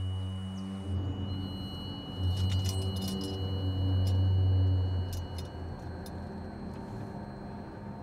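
A low droning hum that shifts pitch a few times. Over it come a few light metallic clinks, between about two and five seconds in, as a sword with a metal hilt is handled inside a car.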